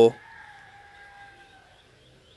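Rooster crowing once, faint: one long call that sinks slightly in pitch and fades about a second and a half in.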